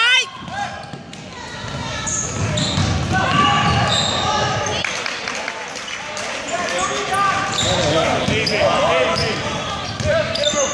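Spectators and players calling out and shouting in a school gym during a basketball game, several voices at once, with a basketball bouncing on the hardwood court.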